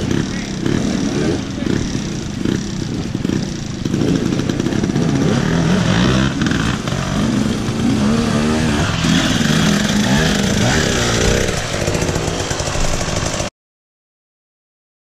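Off-road motorcycle engine running and revving unevenly, its pitch rising and falling, until the sound cuts off suddenly near the end.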